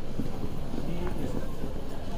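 Airport terminal ambience: background chatter of travellers' voices and footsteps on a polished tile floor, with a few faint sharp clicks.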